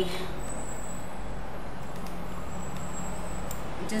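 Steady low hum over a hiss of background noise, with a faint click about three and a half seconds in.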